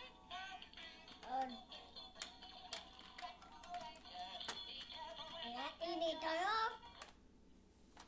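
Battery-powered toy electric guitar playing an electronic tune with a synthesized singing voice, with a few sharp clicks along the way; the tune stops about a second before the end.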